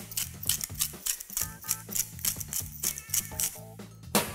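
Hand salt mill being twisted over raw lamb shanks, a quick run of ratcheting, grinding clicks, over background music.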